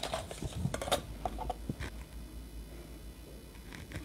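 Faint light taps and scratches of a metal ruler and pointed marking tool on a card pattern on the worktable, mostly in the first two seconds, over a steady low hum.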